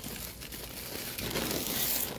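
Plastic bags rustling and crinkling on a loaded hand cart, growing louder in the second half.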